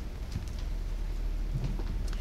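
A pause with no speech: a low steady hum under faint room tone.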